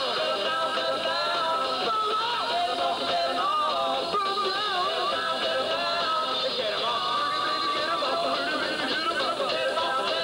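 Rock'n'roll band playing live: a sung vocal line over electric guitar, upright double bass and drums, at a steady, full level.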